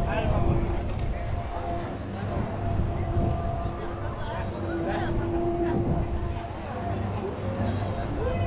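A spinning gondola ride running with a low rumble and a steady mechanical hum that fades in and out, under scattered voices of other riders and visitors.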